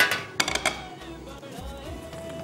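A nonstick frying pan of beef skewers set down on a gas stove's metal grate: a clatter, then a few quick knocks about half a second later, over background music.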